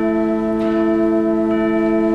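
School wind ensemble holding a sustained chord, woodwinds steady, with two faint soft strokes over it, one about half a second in and one near the end.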